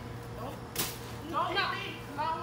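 A balloon popping once with a sharp snap a little under a second in, followed by a short high-pitched voice.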